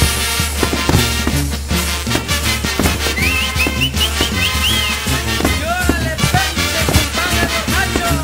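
Mexican banda brass-band music playing an instrumental stretch of a chilena, with a steady beat. A run of about five short rising whistles comes in about three seconds in.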